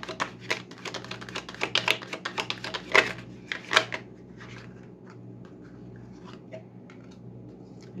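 A deck of tarot cards being shuffled by hand: a rapid run of crisp card clicks and slaps for about four seconds, then quieter, sparser handling of the cards.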